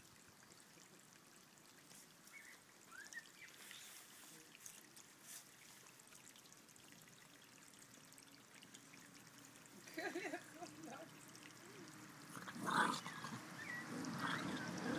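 Two Bolonka Zwetna dogs play-fighting on grass, mostly quiet, with short dog vocalisations about ten seconds in and a louder one about thirteen seconds in.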